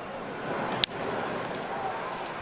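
Ballpark crowd noise, then a single sharp crack of a bat hitting a baseball a little under a second in, off weak contact that sends the ball bouncing slowly toward third.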